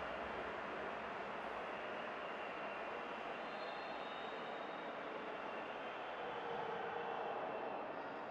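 Steady, even rushing background noise, without speech or music.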